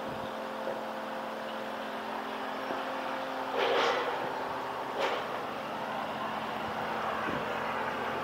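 Road traffic heard from a distance: a steady engine hum that swells louder briefly as a vehicle passes, about three and a half seconds in, with a single short click about five seconds in.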